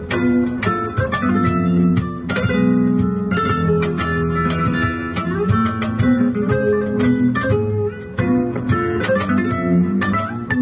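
Solo flamenco guitar playing a soleá por bulerías: a steady run of plucked notes and sharp chord attacks, with a brief drop in level near 8 seconds.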